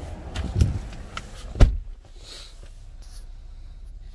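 Knocks and rustling of someone climbing into a car's driver's seat, ending in one loud, deep thump about a second and a half in, then quiet cabin background.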